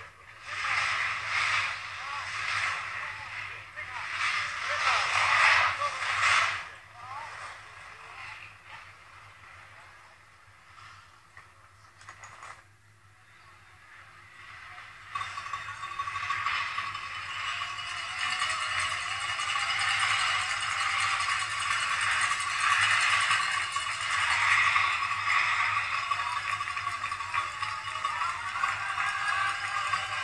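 Skis scraping on hard-packed snow in bursts about once a second as the skiers turn through slalom gates, heard off a TV broadcast. About halfway through, a steady crowd cheer rises and holds.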